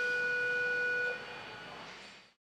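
A single held tone, steady in pitch, that stops a little over a second in and leaves a fading echo.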